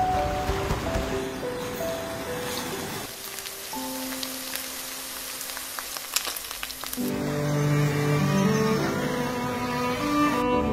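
Music plays throughout. In the middle, for about four seconds, hot oil sizzles and crackles as ladle fritters deep-fry, under a single held note. Fuller string music returns near the end.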